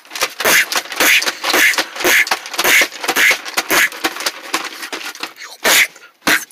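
Rustling and crinkling as a nylon bag is pushed and handled on a wooden floor, in quick irregular bursts that stop about five seconds in, followed by two short separate rustles near the end.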